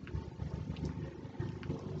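Faint low rumbling background noise with a few soft clicks, and no speech.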